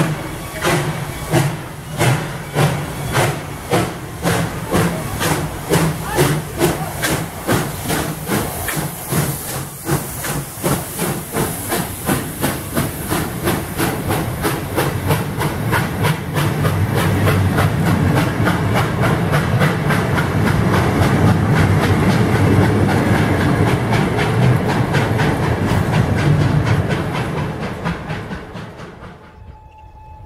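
Ol49 steam locomotive pulling away with a passenger train: sharp exhaust chuffs over hissing steam, about one and a half a second at first, quickening steadily until they run together. From about halfway the coaches roll past with a steady rumble of wheels, which fades away near the end.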